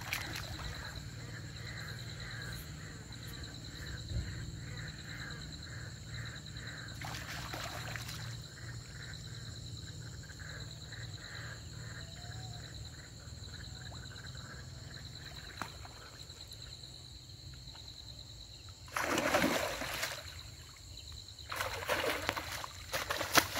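River water splashing around a man wading chest-deep, loudest in a burst a few seconds before the end and again at the very end. A steady high-pitched insect chorus runs underneath.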